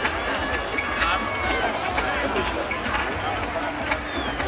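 Crowd of spectators chattering and calling out over one another, many voices at once, above a steady low rumble.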